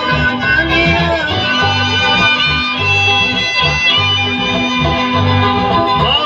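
Live band music played loud through a PA: acoustic guitars with a held melody line over a steadily pulsing bass.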